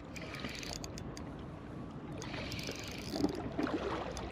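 Spinning reel being wound in with a squid on the line, giving faint clicks, over a low wash of water lapping against shoreline rocks.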